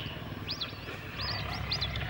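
A small bird chirping: several short, high chirps, a few coming in quick pairs, over a steady low background noise.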